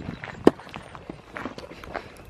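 A few irregular footsteps on a dirt and gravel trail, with a sharp click about half a second in.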